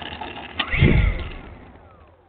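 Electric brushless motor and propeller of an E-flite Pitts S-1S RC plane on 4S power, surging briefly just under a second in and then winding down with a falling whine as the throttle is cut.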